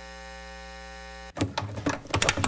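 A steady electronic buzzing hum with many evenly spaced overtones, cut off suddenly about 1.3 seconds in by the start of an electronic dance track with sharp percussive hits.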